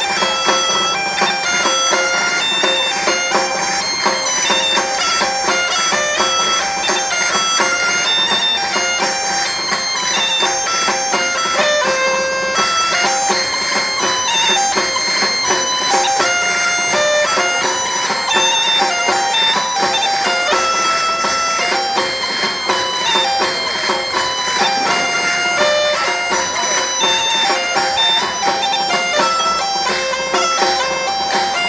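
A band of Asturian bagpipes (gaitas) playing a lively tune over a steady drone.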